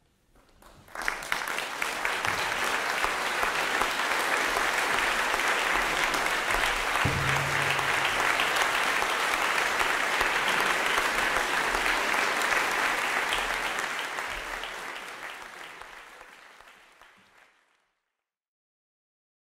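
Concert audience applauding, breaking out about a second in and fading out over the last few seconds.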